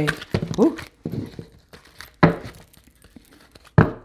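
Tarot cards being handled and shuffled by hand, with short sharp card taps about a second in, a little past two seconds, and near the end.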